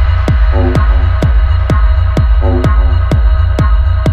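Electronic dance track: a steady four-on-the-floor kick drum at about 130 beats a minute over a pulsing deep bass, with short hi-hat ticks between the kicks. A brief synth chord stab comes once a bar, about half a second in and again about halfway.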